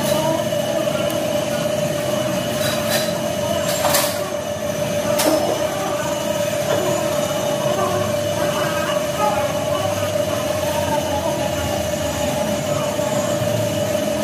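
A steady high whine, like a machine running, continues throughout over workshop background noise. A few light clicks and taps sound in the first five seconds.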